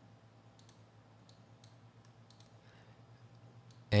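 A few faint, scattered computer mouse clicks over a low steady background.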